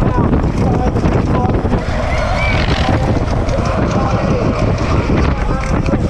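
Wind buffeting a helmet-mounted camera's microphone as a BMX rider races down a dirt track, a loud, steady rushing. A distant announcer's voice is faintly heard through it.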